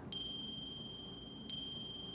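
A bright, high bell-like chime sound effect, struck twice about a second and a half apart, each note ringing on after the strike.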